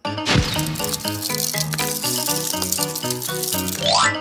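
Edited-in background music: a light rhythmic track of short repeated notes with a rattling shaker-like beat, ending in a rising swoosh.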